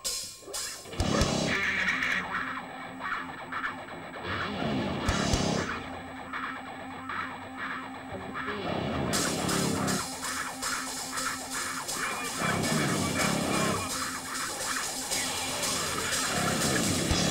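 A live rock band playing an electric-guitar riff over bass and drums. It starts in earnest about a second in, and the cymbals come in fully about nine seconds in.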